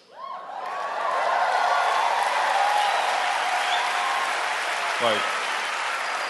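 Live audience applauding and laughing, swelling over the first second and then holding steady.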